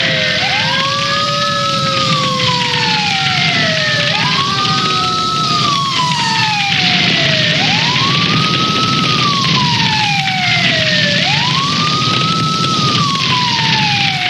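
Several emergency-vehicle sirens wail at once. The loudest rises and then falls slowly in a repeating cycle about every three and a half seconds, and a second, higher siren sweeps alongside it.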